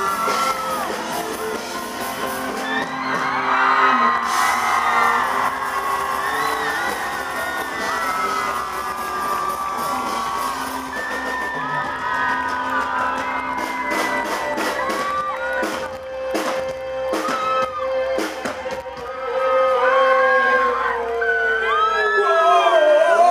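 Live rock band playing: electric guitar and drums, with shouts and whoops over the music. A run of sharp drum hits comes past the middle, and a long held note slides down near the end.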